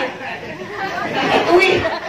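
Speech only: a woman talking into a microphone over a PA system, with chatter around her.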